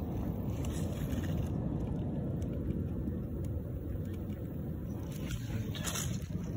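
A steady low rumbling noise with no clear pitch, with brief rustling near the end.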